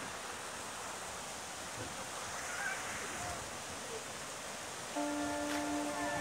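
River water running over a small rapid: a steady rushing noise. Music comes in near the end.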